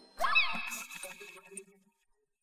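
A short meow-like call that rises and then falls in pitch, with a tail that fades over about a second.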